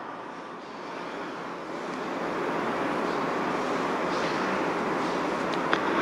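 Steady rushing hiss of background room noise with no distinct pitch. It swells gradually over the first few seconds and then holds level, with a couple of faint clicks near the end.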